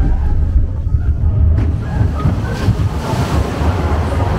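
Splash Mountain log-flume boat moving through the water channel in a dark show section: a steady, heavy low rumble of rushing water and the boat, with faint ride music under it.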